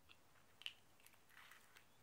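Near silence, with a few faint clicks and rustles as a small plastic cosmetics pot and its lid are handled.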